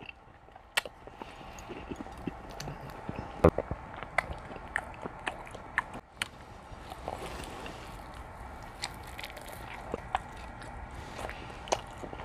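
Close-miked eating sounds: a man chewing and biting into grilled rib meat, with scattered sharp clicks from his mouth and from a fork on the plate.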